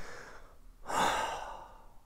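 A man's audible sigh of relief: a breathy exhale that swells about a second in and trails off.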